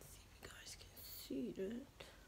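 A woman speaking softly under her breath, mostly whispered, with a short voiced word or two near the end.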